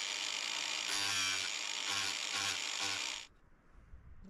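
Angle grinder with a sanding disc running at full speed, a high steady whine with several short heavier passes of the disc against the edge of a wooden board, then switched off a little after three seconds in.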